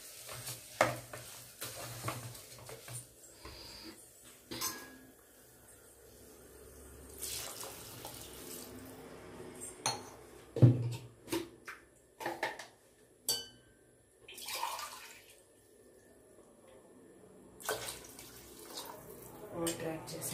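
Rice, vegetables and water being stirred in a pressure cooker with a spatula: the water sloshes, and the spatula knocks against the pot now and then, with the sharpest knocks a little past halfway through.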